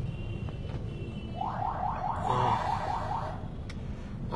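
Electronic siren or alarm sounding in quick repeated rising sweeps, about four a second, starting a little over a second in and stopping after about two seconds. Under it runs the steady low rumble of a moving car, heard from inside the cabin.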